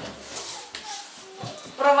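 Quiet knocks and scuffs of a wooden floor board being handled, with a soft thump about a second and a half in. A woman starts speaking at the very end.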